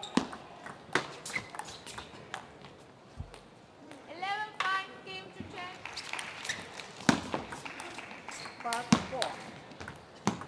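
Celluloid table tennis ball clicking sharply off rackets and the table in a rally, single hits spaced irregularly. A shout, rising then falling in pitch, rings out about four seconds in.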